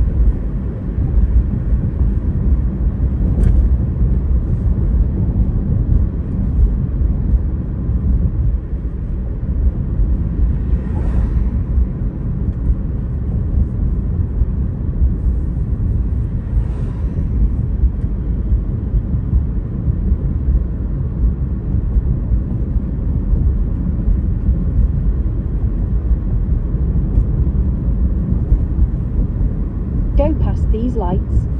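Steady low road rumble inside a moving car's cabin, from tyres and engine at cruising speed. Two brief hissing swells rise and fall about eleven and seventeen seconds in.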